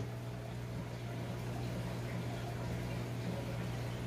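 Aquarium equipment running steadily in a fish room: a constant low hum under the fizz of bubbling water.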